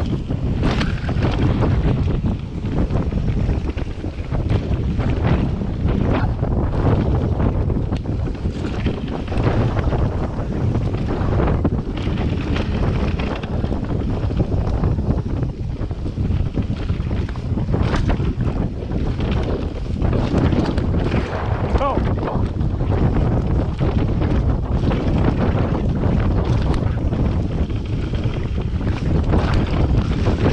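Wind buffeting the microphone of a camera mounted on a mountain bike riding down a dirt forest trail, with tyre noise over leaves and earth and frequent short knocks and rattles from the bike over bumps.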